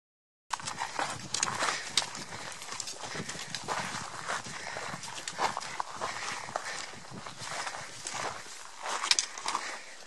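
Hikers' footsteps crunching on a rocky, gravelly trail, with irregular sharp clicks of trekking pole tips striking rock. The sound starts abruptly about half a second in.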